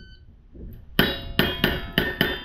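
A shot timer's start beep, then, about a second in, four revolver shots in quick succession, roughly a third of a second apart. Each shot is followed by the ring of steel plate targets being hit.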